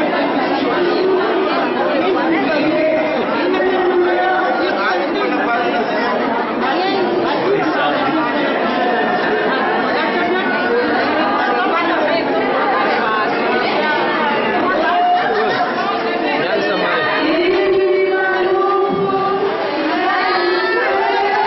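A crowd of people chattering, many voices overlapping at once.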